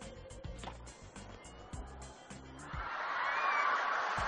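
Background music with a steady beat. About three seconds in, a tennis crowd breaks into loud cheering and applause as the point is won.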